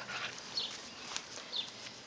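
Puppies tussling in play over a cloth: scuffling and sharp clicks, with short high falling squeaks about once a second.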